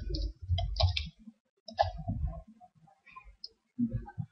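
Irregular clicks and taps from a computer mouse and keyboard.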